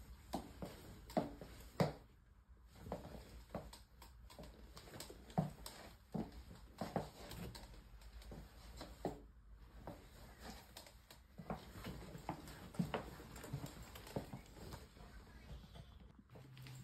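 Faint, irregular taps and knocks, roughly one or two a second, with a few louder clacks among them.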